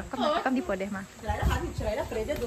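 Women's voices talking indistinctly, with a few low thuds about halfway through.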